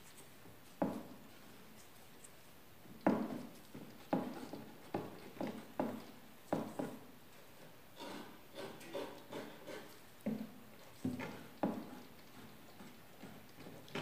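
Putty knife mixing two-part epoxy fairing compound on a board: irregular knocks and scrapes as the blade strikes and drags across the board, about a dozen of them, the loudest about three seconds in.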